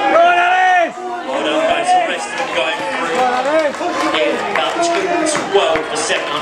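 People's voices trackside: a long, high-pitched shouted call in the first second, then several voices talking and calling over one another.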